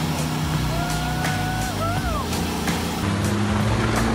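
Car engine running hard over background music with a steady beat, its note changing about three seconds in; a pitched squeal rises and falls near the middle.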